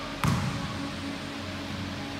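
A single basketball bounce on a hardwood court about a quarter second in, with a short echo in the gym hall; after it only a quieter steady hall background.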